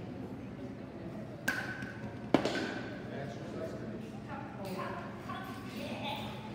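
Two sharp knocks less than a second apart, the second one louder and ringing briefly, over a murmur of indistinct voices echoing in a large hall.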